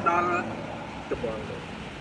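A man's voice speaking Khmer for about half a second, a short voiced sound just after a second in, then a pause filled with a steady low background rumble.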